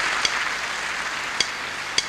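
Audience applauding, slowly dying away, with a few sharp clicks.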